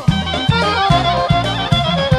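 Bulgarian folk band playing an instrumental passage: quick, ornamented clarinet runs over a steady beat of about two and a half strokes a second.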